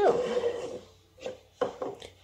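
Plastic drinking cups being slid and set down on a granite countertop: a short scrape, then a few light knocks.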